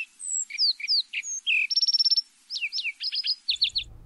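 Small songbirds chirping and singing: a quick series of short whistled notes, some rising and some falling, with a fast trill about halfway through.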